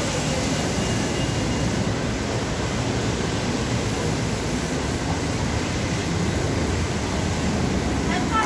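Steady rushing noise with a low rumble underneath, even throughout, with no distinct events.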